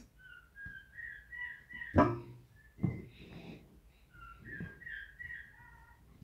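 A series of short, high whistled chirps at shifting pitches, in two bursts, one early and one late. A sharp knock sounds about two seconds in, with a softer one just after.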